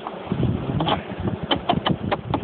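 An irregular run of sharp clicks and knocks over a low rumble, several close together in the second half, like handling noise.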